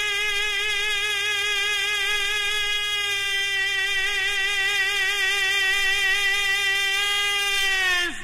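A tenor voice holding one long high note with vibrato, the closing note of the song, which breaks off just before the end.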